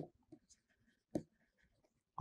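Faint sounds of a stylus writing on a pen tablet, with one brief soft knock about a second in.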